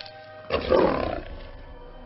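A giant alien bug creature roars loudly for about a second, starting about half a second in and then fading. It is a film creature effect, heard over orchestral score with held notes.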